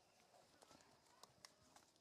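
Near silence: quiet room tone with a few faint, scattered clicks about a second in.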